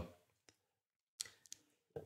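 Near silence: quiet room tone with a few faint, separate clicks spread through a pause in conversation.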